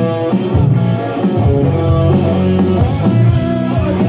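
Live band playing loud amplified rock: an electric guitar with sustained notes over a bass guitar line.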